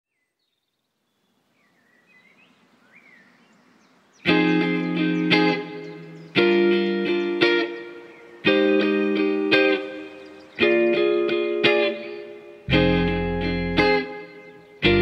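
Electric guitar playing indie-rock chords, struck about once a second with a stronger chord every two seconds, each left to ring and fade, starting about four seconds in after a faint, near-silent opening. Deep low notes join near the end.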